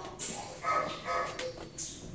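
Shelter dogs barking in their kennels, a few short barks.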